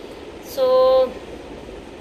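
A woman's voice holds one short, level-pitched vocal sound for about half a second, starting about half a second in, over a steady background hiss.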